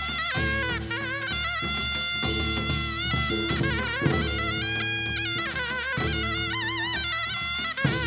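Taepyeongso (hojeok), the Korean double-reed shawm, playing a piercing folk melody that moves between held notes and notes shaken with wide vibrato. Drum and gong accompaniment runs underneath, with a strong stroke about halfway through and another near the end.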